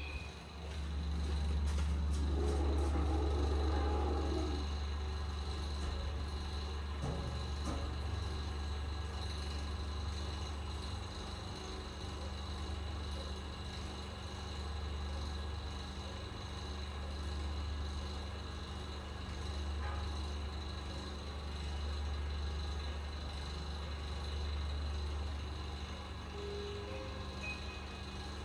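Hansol elevator car travelling in its shaft: a steady low hum of the moving car and drive. It is louder, with added rushing noise, in the first few seconds, then settles.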